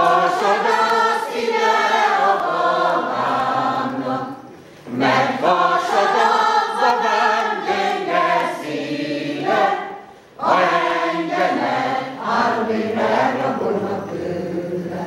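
Women's folk choir singing a cappella in three sung phrases, with short breaths between them about five and ten seconds in.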